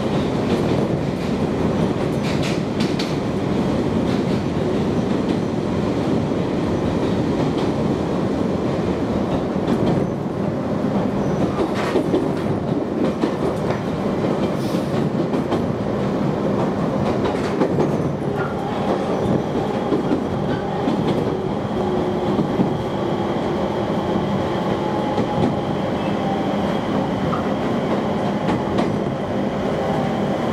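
Inside a JR East Joban Line passenger train running at speed: a steady rumble of wheels on the rails, with a few short clicks. A faint steady whine joins a little past halfway.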